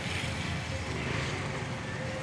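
Steady street noise of motor scooters running, with a faint steady tone held through it.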